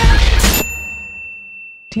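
Intro logo sting: loud music ends with a hit about half a second in, leaving a single high metallic ding that rings on and slowly fades. A voice says "Team Baxter" at the very end.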